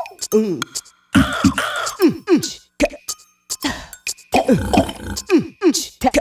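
A person's voice making a quick run of short "um"-like sounds, each dropping in pitch, broken by a few breathy hisses and brief pauses.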